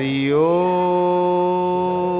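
A man's solo voice chanting a Sanskrit stotra (devotional hymn) in one long held note, gliding up at the start and then holding steady.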